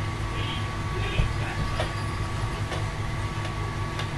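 Steady low hum and background noise of a small room, with a faint click about a second in and another near two seconds.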